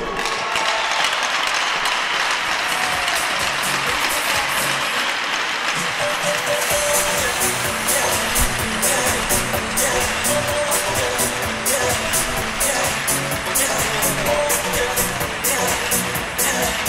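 Crowd applauding, then arena music with a steady beat coming in about seven seconds in and playing over the applause.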